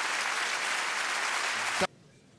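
Large audience applauding, dense steady clapping that cuts off suddenly near the end, just after a short thump.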